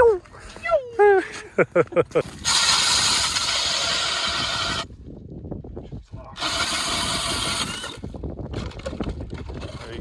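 DeWalt cordless drill spinning an ice auger into lake ice: a steady motor whine of about two seconds, a pause, then a second, shorter run. The auger is boring a test hole to check how thick the ice is.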